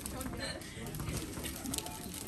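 Shop background: a low murmur of shoppers' voices, with light clicks and rustles from handling packaged goods on a display.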